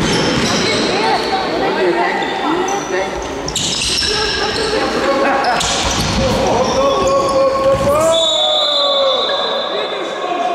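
Futsal being played in an echoing sports hall: a ball being kicked and bouncing on the hard floor, with players' and spectators' voices calling out, and a long drawn-out shout about eight seconds in.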